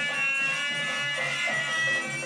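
Harmonium playing a melody in held, reedy tones over a steady dholak rhythm: baithak gana folk music.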